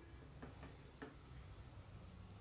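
Faint ticks from a silicone spatula knocking against a nonstick pan while stirring a thick mixture, two of them about half a second and a second in, over a low steady hum.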